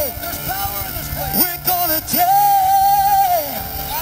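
Church worship team performing a gospel song, voices singing over the music; a lead voice holds one long note from about two seconds in.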